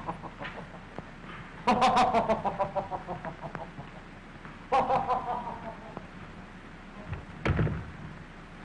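A man laughing: three bouts of quick "ha-ha-ha" pulses, each trailing off, over the hiss of an old film soundtrack. Near the end comes a single heavy thump.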